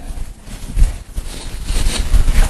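Irregular taps and knocks of writing on a lecture board.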